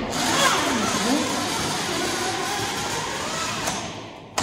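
Car-wash bay vacuum running: a loud, steady rush of suction that starts abruptly just before and stops abruptly at the end.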